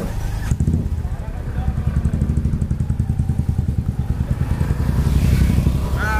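Motorcycle engine running close by, a rapid, even exhaust beat that grows a little louder toward the end.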